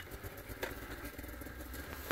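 Two-stroke mountain snowmobile engine idling low, with a few faint clicks.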